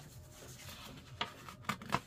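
Loose sheets of paper being shuffled and handled: a soft rustle with a few short, sharp paper snaps in the second half.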